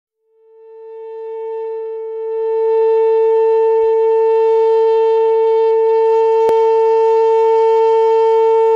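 A single sustained musical tone from an electroacoustic piece, rich in overtones, fades in over about three seconds and then holds steady and loud on one pitch. A brief click sounds about six and a half seconds in.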